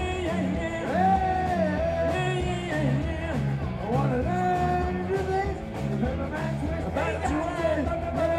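Live rock band playing: a male lead singer sings over electric guitar, bass and a drum kit, with a repeating bass line under the held, bending vocal notes.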